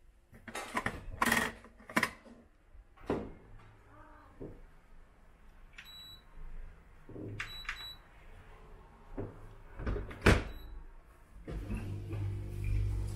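Midea dishwasher being set going: clicks and knocks as the detergent tablet is loaded and the dispenser lid snapped shut, then short high electronic beeps from the control panel as buttons are pressed, once and then twice in quick succession. A loud thump a little before the end as the door is shut, followed by a faint beep.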